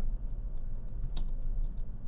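A handful of irregular keystrokes on a computer keyboard, light scattered clicks over a low steady hum.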